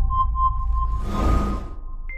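Intro countdown music for a logo animation: a deep low drone with a run of short, high pings, about four in the first second, then a whoosh about a second in.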